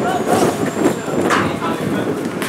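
Players' voices calling out during a small-sided football match, over a steady low background rumble, with a few short sharp sounds of the ball being kicked.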